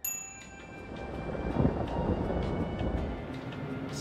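Thunder rumbling over rain, swelling to its loudest about a second and a half in and then easing, under a music score of held tones.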